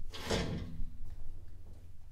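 A chair scraping on the floor, about three quarters of a second long in the first second, with a faint squeak in it, as it is pulled in to the table.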